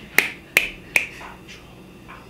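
Hand claps: three sharp claps about a third of a second apart in the first second, then they stop.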